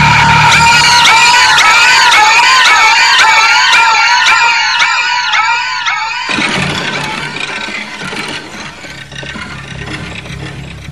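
Shrill, high-pitched wailing tone in a film soundtrack, wavering up and down about twice a second, then cutting off abruptly about six seconds in. A quieter, fading wash of sound follows.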